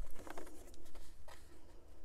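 Scissors cutting through white cardstock in a few short, faint snips, with the card rustling as it is handled.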